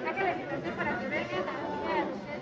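Indistinct background chatter of several voices, with no single voice standing out.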